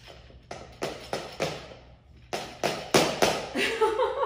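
Metal folding laundry drying rack clacking as its frame is pushed together and pulled apart: a quick run of sharp clacks about half a second in, then a second, louder run from a little past two seconds.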